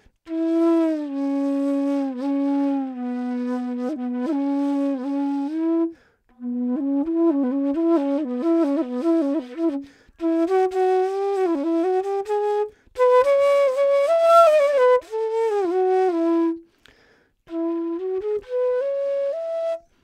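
Hindustani E bansuri, a bamboo transverse flute, played solo in its lower register: several breath-long phrases of held notes with gliding slides between them, separated by short breaths. The line climbs higher in the middle, then settles back down to lower notes.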